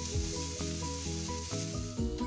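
Chopped onions sizzling as they fry in hot butter and oil in a steel pan, stirred with a wooden spoon, under a soft background melody of short, evenly paced notes.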